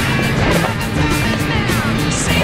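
Background music with a fast, steady beat over held bass notes.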